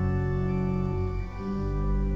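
Organ music: slow, sustained chords that change every second or so.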